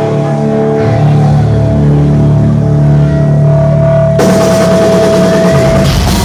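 Live heavy metal band: electric guitar and bass hold ringing, sustained notes. About four seconds in, cymbals crash in suddenly, and heavy low drums and bass join near the end as the song gets going.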